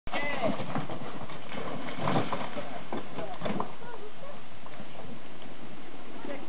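Knocking of feet and dog paws on a wooden swim dock, irregular through the first few seconds, with voices and a steady background hiss.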